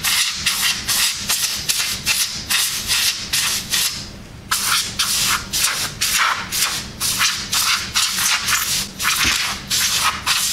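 Can of compressed air sprayed through its straw in rapid short bursts of hiss, about three a second, with a brief pause near the middle, blowing dust off the back of a graphics card's circuit board.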